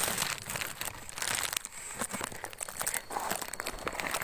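A hand tool digging and prying into soil, roots and the papery comb of a ground-wasp nest: an irregular run of crunching, crackling and tearing.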